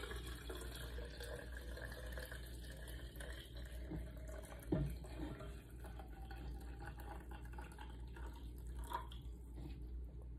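Water poured from a stainless saucepan into an insulated stainless steel bottle, a faint, steady filling sound, with one light knock just before five seconds in.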